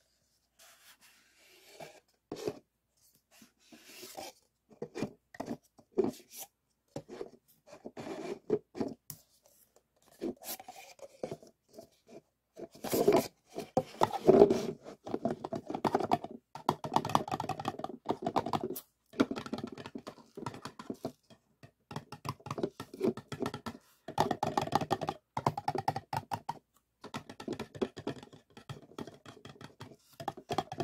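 Paper cups handled by hand: scraped, rubbed and tapped, the stacked cups slid apart. Separate scrapes and taps come every second or so at first, then about twelve seconds in the handling becomes dense and almost continuous.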